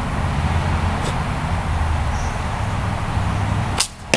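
A steady low background rumble, then near the end the sharp snap of a hickory snake bow's string on release. A fraction of a second later comes a second sharp hit: the arrow striking.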